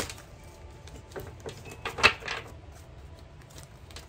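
Tarot cards being handled over a glass tabletop: scattered light clicks and taps, with one sharper tap about two seconds in.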